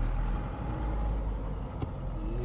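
Steady low rumble of a vehicle's engine and road noise, heard from inside the cab while it drives along.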